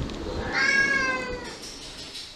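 A domestic cat giving one meow lasting about a second, its pitch sliding slightly down.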